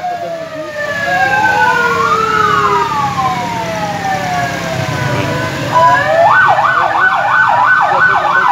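Police vehicle sirens in slow rising and falling wails, several overlapping, then switching to a fast yelp of about two to three cycles a second near six seconds in, over a low vehicle rumble.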